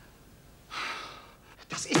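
A man's single heavy breath, just under a second in, as the drugged man comes round and pushes himself up from the floor. A man's voice starts speaking near the end.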